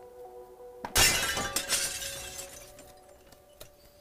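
A sudden loud crash about a second in that trails off over about a second and a half, over steady background music.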